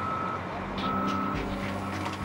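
Construction vehicle's back-up alarm beeping, one steady-pitched beep about every second, twice in these seconds, over a low steady engine hum.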